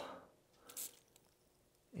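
A short hiss of penetrating oil sprayed from an aerosol can through its red extension straw onto the rusted threads of a bottle jack, a single brief squirt about two thirds of a second in. The rest is near silence, with a faint click a little later.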